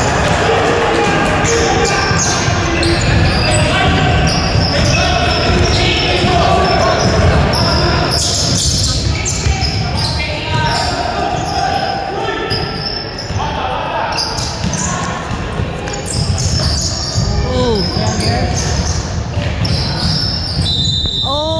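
Indoor basketball play: a basketball bouncing on a wooden gym floor, with short high sneaker squeaks and players and spectators calling out, all echoing in the hall.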